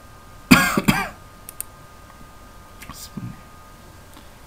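A man clearing his throat close to the microphone, a short two-part rasp about half a second in. A few faint computer mouse clicks follow later.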